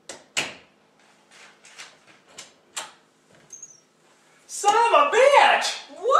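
A run of sharp knocks and clicks, the loudest about half a second in, as of a door and things being handled. From about four and a half seconds a loud, high voice sweeps up and down in pitch.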